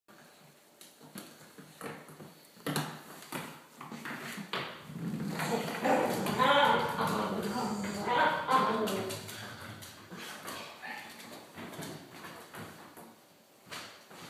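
Light knocks and taps of a small pumpkin being pushed about on a hardwood floor by an Italian Greyhound, with scattered clicks throughout. Voices sound for a few seconds in the middle.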